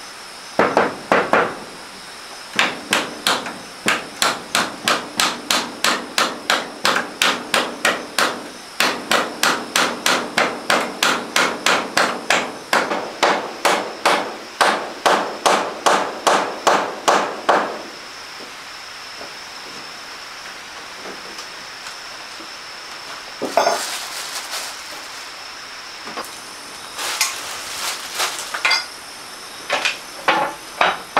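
A hammer nailing wooden wall boards: a long run of sharp, even blows at about two and a half a second, broken by brief pauses, that stops a little past the halfway point. Later come two short bursts of knocking.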